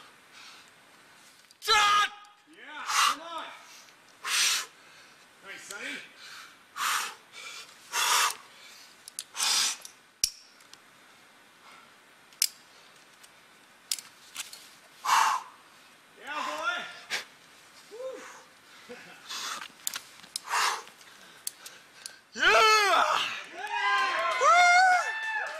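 A climber's forceful breaths and grunts of effort, a sharp exhale every second or two, some with a strained voiced grunt. Near the end comes loud shouting.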